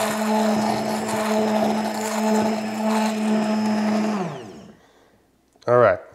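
Handheld immersion blender running steadily in a glass measuring cup of hot chocolate mixture, then switched off about four seconds in, its motor winding down with falling pitch.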